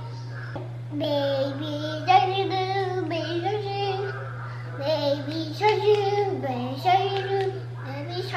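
A toddler singing a wordless tune in held notes that step up and down, starting about a second in, over a steady low hum.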